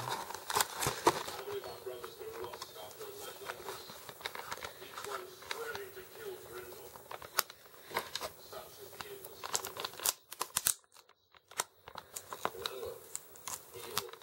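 Action-figure blister packaging, cardboard card and plastic, being handled and torn open: crinkling, tearing and scattered clicks, with a short quiet gap about ten seconds in. Faint dialogue from a film playing in the background runs underneath.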